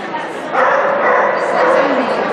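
Dog barking, starting about half a second in, in an echoing indoor arena.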